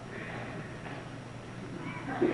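A quiet pause in an old studio broadcast: a low steady hum under a faint murmur of background voices from the studio.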